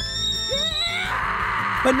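A woman screaming, a rough, hoarse scream that starts about halfway through after a high held note, over background music.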